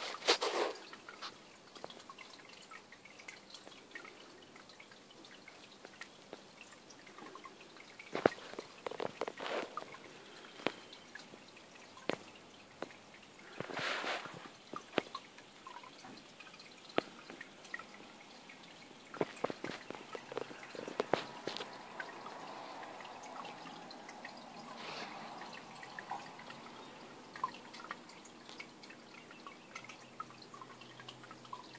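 Faint water dripping and trickling in an aquarium: irregular small drips and ticks, busier in a couple of stretches, with a brief splashy hiss about halfway.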